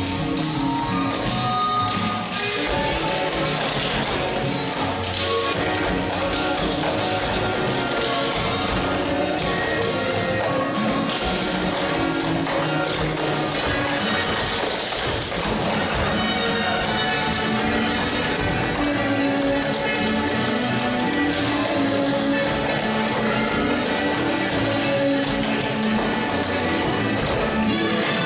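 Two tap dancers' shoes striking the stage floor in quick rhythmic patterns over a recorded musical backing track.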